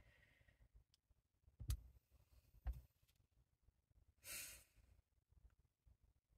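Near silence, with two soft knocks of clear acrylic stamping tools handled on the work surface between about one and a half and three seconds in, and a brief breathy exhale, like a sigh, a little past four seconds.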